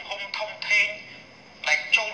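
Only speech: a man talking in Khmer, his voice thin with little low end, like a phone or webcam line.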